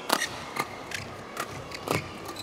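Badminton rackets striking the shuttlecock during a fast doubles rally: several sharp hits, the loudest at the start and near the end, over low arena background noise.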